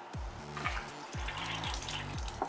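Distilled water draining in a thin stream from the motorcycle engine's bottom coolant drain bolt and splashing into a plastic drain pan while the cooling system is flushed. Background music with a repeated falling bass note plays over it.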